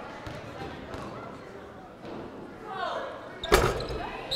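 A basketball is dribbled at the free-throw line and shot. About three and a half seconds in there is one loud hit as the ball reaches the rim, over low gym chatter.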